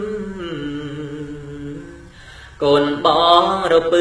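Khmer smot, Buddhist poetry chanted solo by a man, drawn out in long held, wavering notes. The phrase fades away about two seconds in, and after a short break the chant comes back louder on a new phrase.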